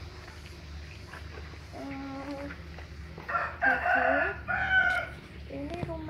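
A rooster crowing once: a loud call of nearly two seconds starting about three seconds in, with a short break before its last part.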